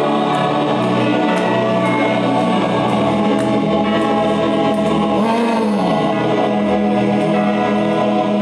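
Gospel singing by a group of voices: a slow song of long-held notes at an even, steady level.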